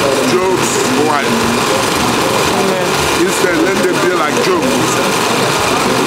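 A man talking continuously, over a steady background noise.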